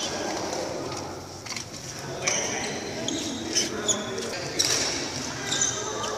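Badminton rally: rackets strike the shuttlecock several times, roughly a second apart, with short high shoe squeaks on the court floor, echoing in a large sports hall.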